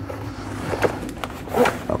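Cardboard product box being pried open and its inner tray slid out, with cardboard scraping and rustling and a louder scrape near the end. A low steady hum runs underneath in the first half.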